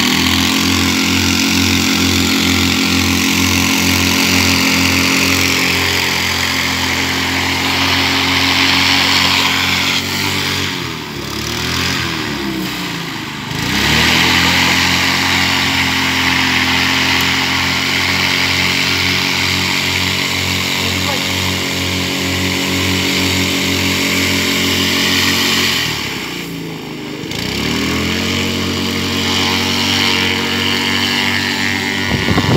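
Honda GX200 single-cylinder four-stroke engine driving a mini airboat's propeller, running steadily at high speed with a loud propeller rush. Twice, about eleven seconds in and again near twenty-six seconds, the engine note falls away and then climbs back up.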